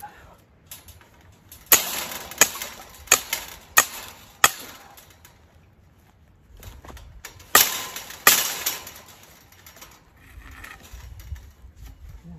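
Sharp metallic strikes from hand-tool work on a welded-wire animal fence: five hits about two-thirds of a second apart, then two more a few seconds later.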